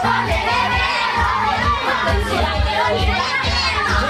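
A group of children shouting and singing over loud dance music with a steady bass beat.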